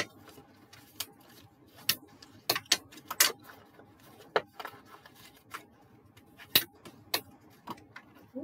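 A scored strip of card being folded and creased by hand on a cutting mat, with a plastic tool pressed along it and put down: irregular sharp clicks and taps, the loudest about two and a half, three and six and a half seconds in.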